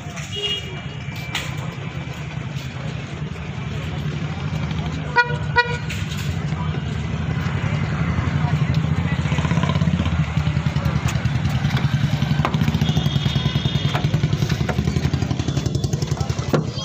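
A vehicle engine running steadily close by, growing louder over the first ten seconds, with two quick horn toots about five seconds in.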